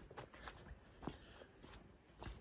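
Faint footsteps on dry grass and dirt: a few soft crunches and ticks, otherwise near silence.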